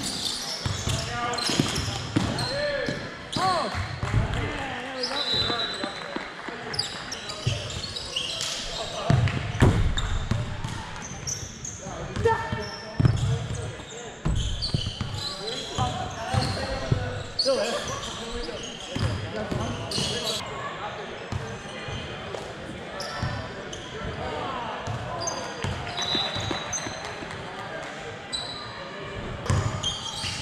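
Indoor soccer game: players' indistinct shouts and calls mixed with repeated thuds of the ball being kicked and bouncing on the turf.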